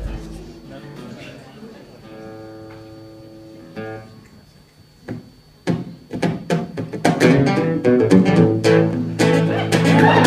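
Acoustic guitar: a chord rings briefly, then strummed chords start about six seconds in and build into loud, steady rhythmic strumming as a song's intro, with audience murmur early on.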